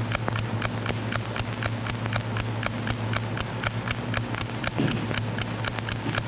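Mechanical alarm clock ticking steadily, about four to five ticks a second, over a low steady hum.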